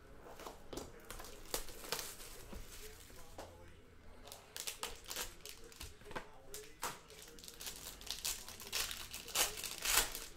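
Plastic shrink-wrap being torn off a sealed trading-card box and crumpled, then a foil card pack crinkling in the hands. It is an irregular run of sharp crackles, loudest near the end.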